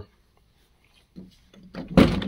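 A stick-type fire extinguisher handled against a vehicle's door sill trim while being tried in place. The first second is near silent, then come a few soft scrapes, and a sharp knock lands at the very end.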